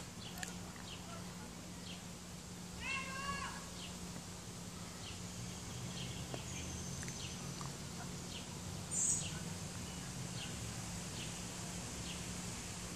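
Quiet backyard ambience with a steady low hum and scattered faint, short bird chirps. About three seconds in comes one short mewing call, and there is a brief high chirp a little before the end.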